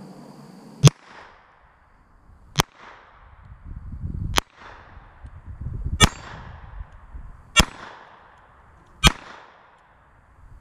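Colt Model 1908 Vest Pocket pistol firing six .25 ACP shots at a slow, even pace, about one and a half seconds apart. The six shots empty its six-round magazine.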